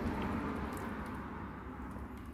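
Faint taps of a laptop's F2 key being pressed over and over to enter the BIOS setup while the machine boots, over a steady low hum.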